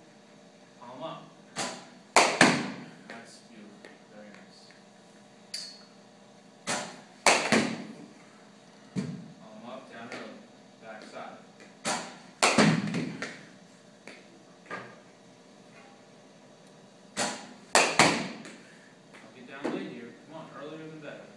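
A baseball bat being swung again and again in a small room, giving sharp knocks in clusters of two or three about every five seconds, the loudest near the two-second mark and at twelve and eighteen seconds. Low voices are heard between the swings.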